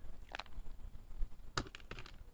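Faint handling noise from potting a succulent: a few soft clicks and rustles as gloved hands work a plant, pot and potting soil.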